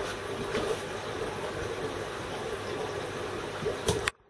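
Steady background noise, an even hum and hiss, with a brief knock just before the end.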